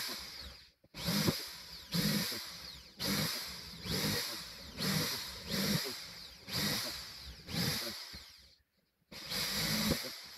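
Cordless drill boring angled vent holes through construction plywood, run in short bursts of about one a second. Each burst starts sharply and tails off, with two brief stops, one just under a second in and one about 8.5 seconds in.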